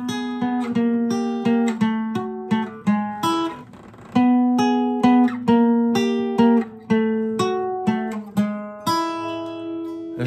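Acoustic guitar playing a blues turnaround: notes picked one after another on the fourth and second strings as the fingering shape steps down the neck, with a low note ringing under the changing higher notes. A short lull comes a little before the middle, then the picking resumes.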